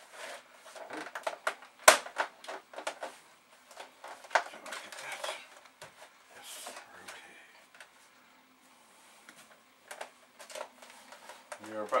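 Clicks and knocks of an Amiga 500's plastic case being handled and set down on a desk. The loudest, a single sharp knock, comes about two seconds in.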